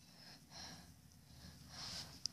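Near silence with faint breathing noises, a soft swell about half a second in and another near the end.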